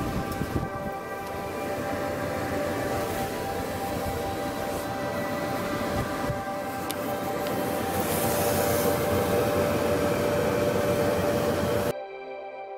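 Maytag Neptune electric dryer running with a steady motor hum over a continuous rumble from the turning drum, getting a little louder near the end. It is running normally again after being repaired.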